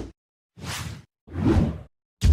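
Two short whoosh sound effects in quick succession, each about half a second long, with silence between them.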